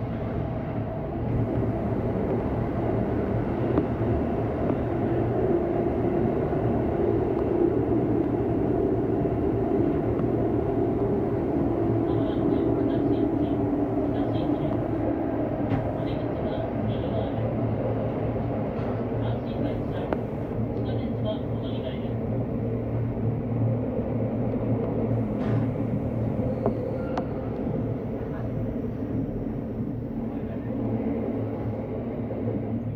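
JR West electric commuter train running through an underground tunnel, heard from inside the front car: a steady rumble of wheels on rail with a constant motor hum. Short runs of high ticking come and go in the middle.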